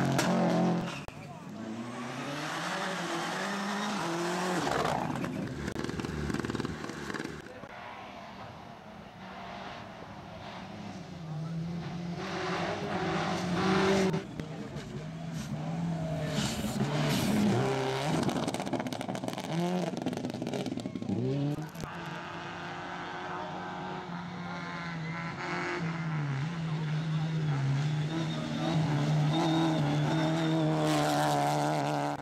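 Rally cars at speed on a dirt stage. Their engines rev up and drop back through gear changes, and each car rises and fades as it passes, with gravel spraying from the tyres.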